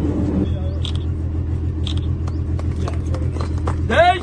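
A steady low engine drone, with a few faint clicks over it.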